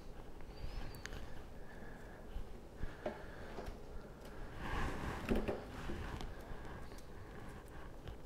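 Quiet handling noise: a few faint light clicks and a soft rustle about five seconds in, from hands separating red onion pieces and threading them onto bamboo skewers.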